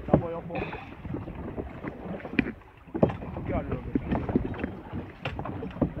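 Wind on the microphone and sea water washing against a small open boat, with scattered sharp knocks and thumps on the hull, the loudest about 3 seconds in. Muffled voices come through now and then.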